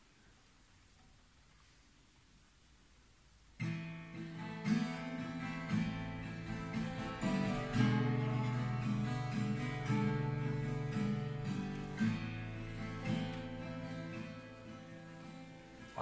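Near silence for about three and a half seconds, then an instrumental country intro on acoustic guitar and dobro (slide resonator guitar), the two played together.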